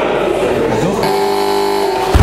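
Spectators' voices while the lifter holds the barbell overhead. About halfway through, a steady electronic tone sounds for about a second: the referees' down signal telling the lifter to lower the bar.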